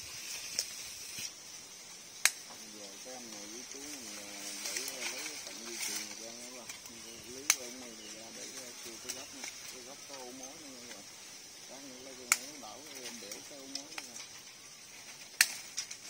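Cutting pliers snipping steel wire mesh wrapped around a tree trunk: five sharp snaps spaced a few seconds apart. A steady insect hiss runs underneath.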